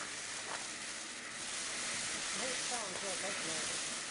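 Ground fountain firework spraying sparks with a steady hiss.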